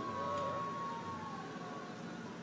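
Distant siren: a long, steady high tone with a second tone slowly falling in pitch, fading out near the end, over faint street noise.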